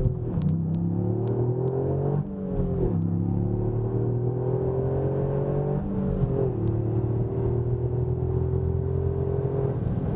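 Toyota GR Yaris's 1.6-litre turbocharged three-cylinder engine heard from inside the cabin, accelerating hard through the gears. The engine note rises slowly, then steps down at gear changes about two seconds and about six seconds in, and climbs again.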